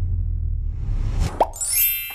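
Background music with a steady low bass that drops out about a second and a quarter in. A short falling 'plop' sound effect follows, then a rising swoosh that leads into the next music cue: an editing transition sound.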